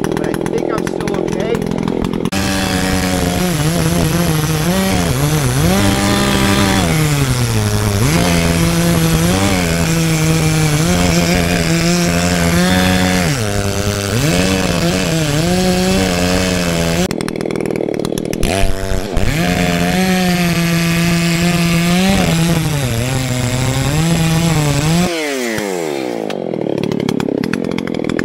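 Chainsaw cutting into a standing tree trunk to open up the face notch for felling. The engine's pitch sags as the chain bites into the wood and climbs again as it eases, over and over. It drops back briefly about two-thirds of the way in, and near the end it winds down with a falling pitch.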